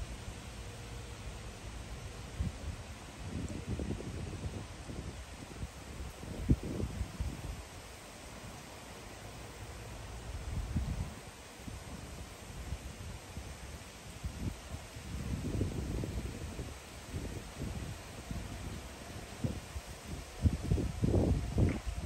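Wind gusting through the treetops and buffeting the microphone: a low, irregular rumble that swells and fades several times and is loudest near the end.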